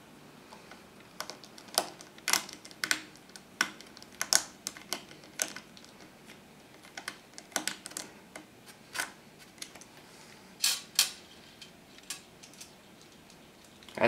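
Hand screwdriver working screws into the metal side of a hard drive mounted in a NAS drive bracket: irregular sharp metallic clicks, a few a second with short pauses. The Phillips bit is too small for the screw heads.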